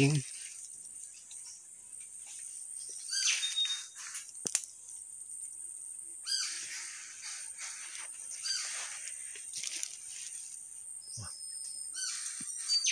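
A wild songbird calling in short, high whistled phrases several times, over a steady high-pitched insect drone from the forest.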